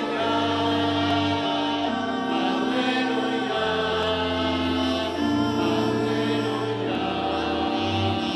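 Church choir singing a slow sacred chant, with long held chords that change every second or two.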